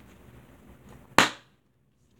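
A single sharp snap about a second in, with a short decay, then a moment of dead silence.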